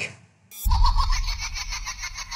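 Horror film soundtrack: after a brief silence, a sudden hit about half a second in opens a deep low rumble with a rapid, even flutter of ticks above it.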